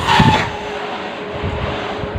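Breath blown into a latex balloon as it is inflated by mouth: a loud rush of air in the first half-second, then steady airy noise.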